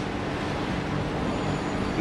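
Steady background hiss with a faint low electrical hum from the microphone and recording chain, with no speech.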